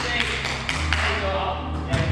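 Basketball play on a hardwood gym court: a few sharp taps and thuds from the ball bouncing and shoes on the wooden floor, over players' voices.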